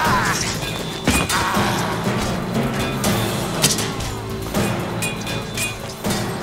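Dramatic film-score music with a few sharp hits from the sword fight, about a second in, then around three and a half and four and a half seconds.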